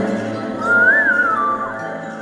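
Song outro: a single high, whistle-like melodic line rises and then falls once, over sustained backing chords that grow quieter toward the end.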